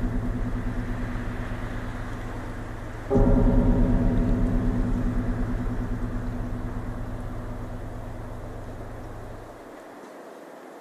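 Deep, gong-like low note from a film score, wobbling quickly as it slowly dies away, struck again about three seconds in and fading out near the end.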